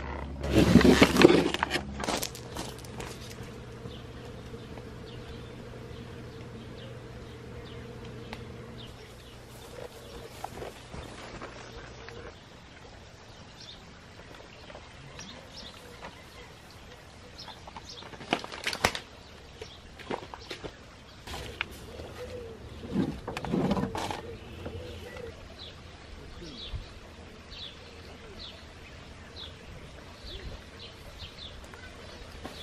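Outdoor garden ambience: small birds chirping, with a steady low hum that stops about twelve seconds in and a few knocks and rustles later on.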